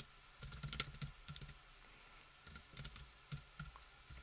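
Typing on a computer keyboard: a run of faint key clicks in two bursts, the second starting about two and a half seconds in.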